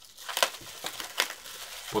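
Bubble wrap crinkling and rustling in the hands as it is wrapped around a remote control and fastened, with a few sharper crackles.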